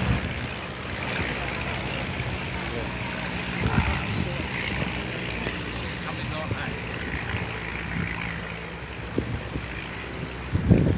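Steady, distant drone of a de Havilland Tiger Moth biplane's engine, with wind on the microphone.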